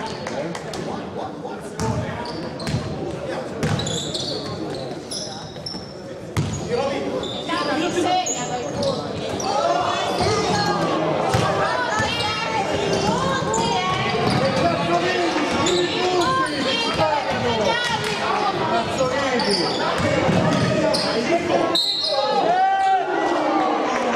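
Basketball game on a wooden indoor court: the ball bouncing, short shoe squeaks and players' and spectators' shouts, echoing in a large hall. It gets louder about ten seconds in.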